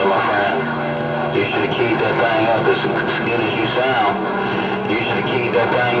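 A CB radio receiving skip: distant stations' voices come through the radio's speaker, unclear and running over one another. A steady low tone comes and goes beneath them.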